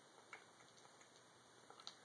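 Faint, scattered clicks and smacks of a cat chewing and lapping tuna from a bowl, the two sharpest about a third of a second in and near the end.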